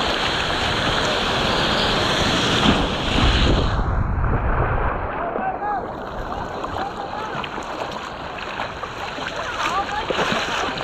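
Seawater sloshing and splashing against a surfboard and a GoPro close to the water, over surf and wind noise on the microphone. A little past the middle the sound turns muffled and low for about two seconds, as if water is washing over the camera's microphone.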